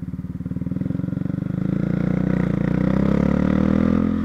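Honda CB Twister's single-cylinder engine accelerating in gear, its pitch and loudness rising steadily.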